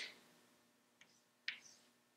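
Chalk tapping and scratching on a blackboard as a line is written: a faint tap about a second in, then a sharper click half a second later.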